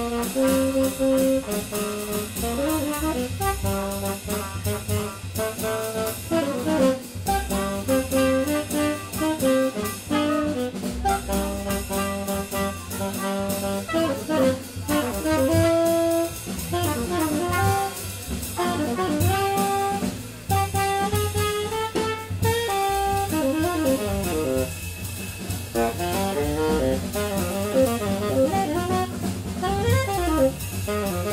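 Live jazz quartet playing: tenor saxophone and trumpet carry the melody over walking double bass and a drum kit.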